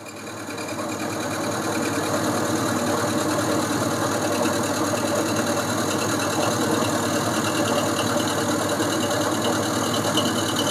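Boxford lathe running with an end mill in its spindle, milling the side of a small T-nut. The machine noise builds over the first couple of seconds, then holds steady.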